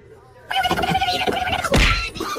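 A wavering, warbling vocal call about a second long, starting about half a second in, ending in a short loud burst near the end.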